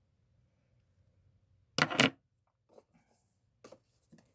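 Makeup items being handled and set down: two sharp clacks close together about two seconds in, then a few fainter clicks.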